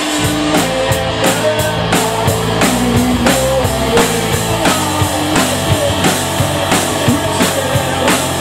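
Live rock band playing: electric guitars holding and bending notes over a steady drum-kit beat.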